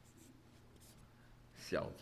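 A pen scratching faintly on a sheet of paper as characters are written, followed near the end by a man's voice speaking a single word.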